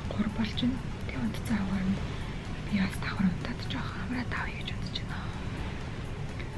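A woman speaking softly, close to the microphone, in a near-whisper, with background music underneath.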